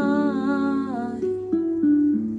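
A woman's voice holds a long sung note with vibrato that slides down and ends about a second in, over a karaoke backing track. The backing track then carries on alone with short plucked notes.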